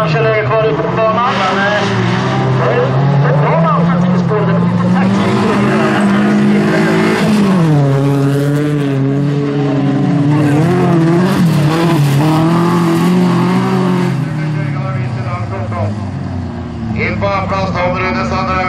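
Bilcross race car engines revving hard under acceleration, the pitch climbing and then dropping sharply at gear changes, with some tyre noise on the loose surface.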